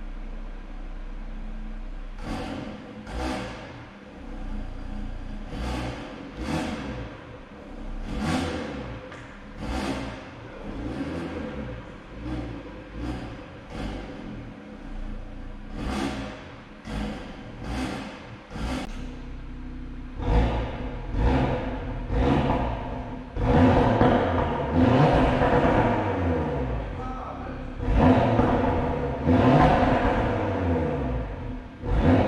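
2018 Audi RS3's turbocharged 2.5-litre five-cylinder engine, fully warmed up, idling and then blipped through a dozen or so short revs with its exhaust in Comfort mode. From about twenty seconds in the revs come louder and longer, with the exhaust switched to Dynamic mode.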